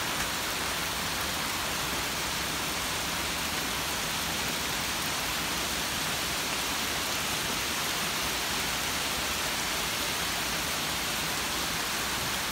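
Steady rain falling: an even, unbroken hiss with no thunder.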